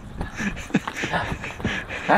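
Scuffing and clothing rustle of a person clambering over granite boulders, irregular small knocks and scrapes over a noisy background.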